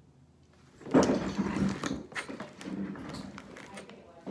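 Electronic keyboard played in another room, starting suddenly about a second in with a string of loud notes and sounds.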